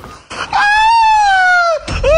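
One long, high-pitched animal call that rises briefly and then slides slowly down in pitch, starting about half a second in.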